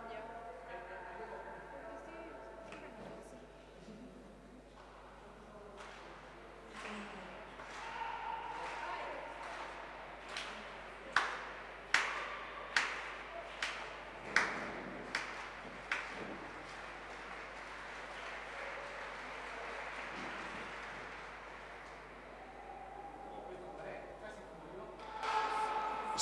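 Slow, steady rhythmic hand-clapping: about nine sharp claps a little under a second apart, echoing in a large indoor hall, over a low murmur of voices.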